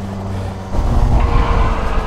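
125cc go-kart engine running at speed, heard close up from the kart itself; about a second in it grows louder and rougher as the kart powers out of the corner.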